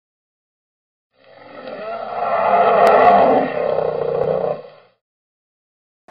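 A roar-like intro sound effect that swells up over a couple of seconds, holds, and fades out, with a short sharp click about halfway through.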